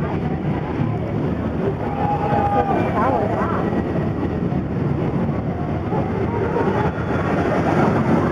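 Wicked Twister impulse roller coaster's train running on its steel track, a steady rumble that grows a little louder near the end as the train swings back down, under the chatter of the waiting crowd.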